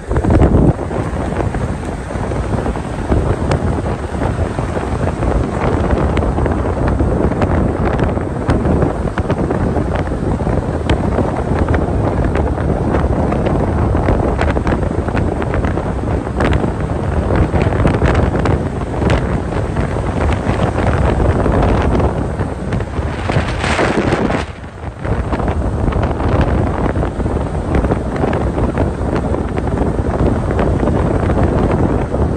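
Wind rushing over the microphone with steady road and tyre noise from a moving car, dipping briefly once near the end.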